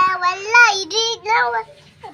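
A young child's high voice: a long held sung note, then a few quick syllables that rise and fall in pitch.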